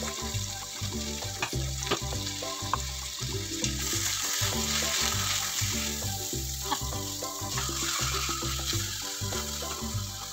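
Rabbit meat frying with red onion and garlic in a stainless steel pan, sizzling steadily, with a spatula clicking and scraping against the pan as the meat is turned; the sizzle grows louder about four seconds in. Background music with a steady beat runs underneath.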